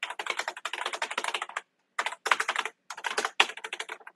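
Fast typing on a computer keyboard: three runs of quick keystrokes, broken by short pauses about one and a half and two and three-quarter seconds in.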